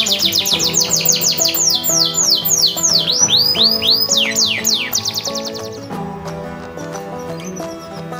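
A canary singing a fast trill of repeated high, falling whistles over background music. The trill slows in the middle, quickens again, and stops about six seconds in.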